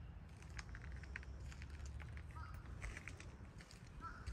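Faint footsteps crunching on dirt and gravel ground, a scatter of light irregular crackles over a low rumble.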